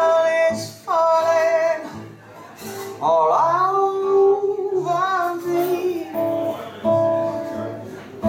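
A woman singing rhythm-and-blues in a raw style over guitar, holding long notes with vibrato and swooping up into a note about three seconds in; the guitar carries on under her, steadier near the end.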